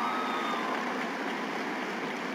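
Large audience applauding steadily, with a few held cheers that fade out under a second in.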